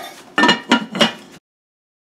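A metal pot lid clanking onto a Dutch oven three times in quick succession, each knock with a short ringing, then the sound cuts off abruptly.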